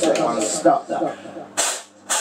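Broken voice sounds, then two short, sharp hissing bursts about half a second apart near the end.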